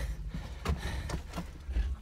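A handful of irregular knocks and thuds with rustling: a person scrambling into a dugout with a handheld camera.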